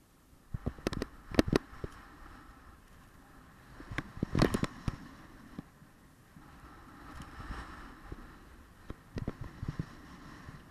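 Skis scraping over hard snow in three loud patches with sharp knocks: about a second in, around four and a half seconds, and near the end.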